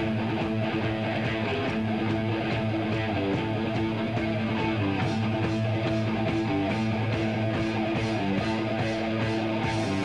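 Live heavy metal band playing an instrumental passage: electric guitars and bass over drums, with steady, regular cymbal strokes.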